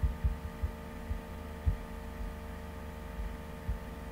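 Steady electrical hum with several soft, low thumps at irregular times, the strongest right at the start and a little before halfway.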